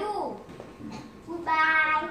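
A child's voice finishing the answer "yes, I do" with a falling "do", then about a second and a half in a short, high-pitched, held squeal from a young boy as he throws his arms up.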